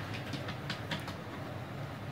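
Steady low hum of background room noise, with a few light, sharp clicks in the first second.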